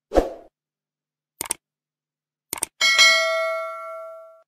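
Added sound effects: a short pop, then two quick double clicks, then a bell ding whose ringing fades away over about a second and a half.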